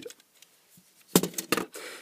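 Plastic clicks as a server fan's plastic impeller, the magnet rotor of its motor, is pulled free of the fan housing: two sharp clicks a moment apart, about a second in, then light handling rattle.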